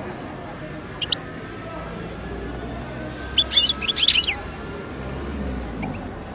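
European goldfinch calling: a brief double chirp about a second in, then a quick burst of twittering notes around the middle. A steady low street hum runs underneath.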